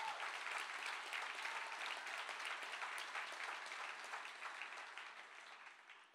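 Audience applauding, dense clapping that dies away near the end.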